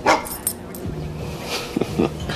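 A golden retriever gives one short, sharp bark just at the start.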